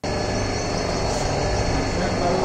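Plate-pressing machine running: a steady mechanical hum with a constant hiss.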